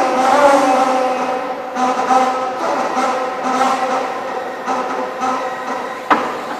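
Autolift electric forklift's motor whining: a steady pitched hum that falls in pitch at the very start, then holds level with small wavers in loudness.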